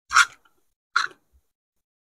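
Close-miked eating sounds: two short, loud mouth noises of chewing, one at the start and one about a second later.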